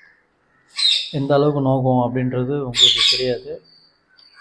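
A man's voice speaking after a brief pause about a second long; no other sound stands out.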